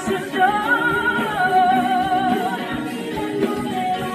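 Spanish-language Christian worship ballad: a woman's voice sings a long held note with vibrato over band accompaniment.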